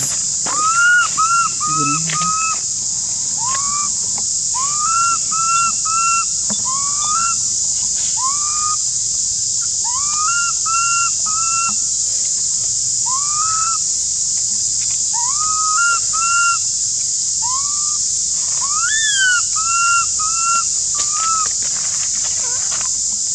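Baby macaque crying with repeated high, whistle-like coos that rise and then level off, in quick runs of two to four, the distress calls of an infant left by its mother. A steady high insect drone runs underneath.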